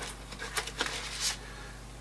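A few light taps and clicks with soft rustling as small crafting items are handled on a work table: a bottle being set down and a plastic palette mixer picked up.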